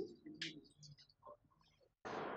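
Near silence: room tone with a few faint, brief small sounds.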